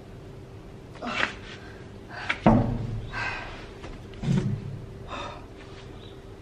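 A person breathing out hard in short bursts from the exertion of a resistance-band exercise. A sharp thump comes about two and a half seconds in, the loudest sound, and a softer low thump follows near four and a half seconds.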